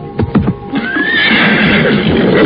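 Horse neighing sound effect: a long, loud whinny that sets in under a second in, following a few quick knocks, with music underneath.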